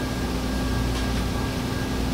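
Steady room tone in a pause between words: a low, even hum and hiss with a faint steady high tone and no other events.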